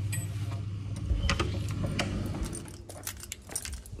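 Irregular small clicks and rattles from things being handled while someone walks, thickest in the second half, over a low steady rumble that fades out about two and a half seconds in.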